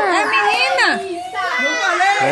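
Excited young children's voices calling out over one another, high-pitched and sliding up and down in pitch, with a short dip in loudness about one and a half seconds in.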